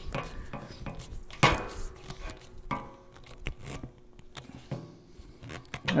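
Scattered small metallic clicks and knocks of a split-nut driver turning brass saw nuts home in a wooden handsaw handle, with one sharper knock about one and a half seconds in.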